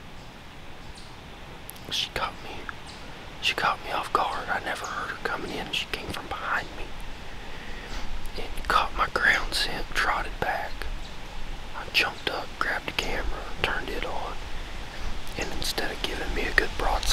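A man whispering close to the microphone, in runs of hushed words.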